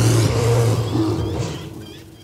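A deep, drawn-out roar from an animated yeti, loud at first and fading away over about two seconds.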